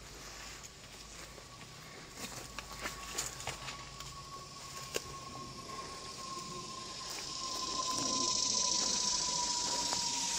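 Footsteps through woodland undergrowth, with scattered crackles and snaps of leaves and twigs, most of them in the first half. A faint thin whine runs throughout, slowly sinking in pitch, and a hiss grows louder over the last few seconds.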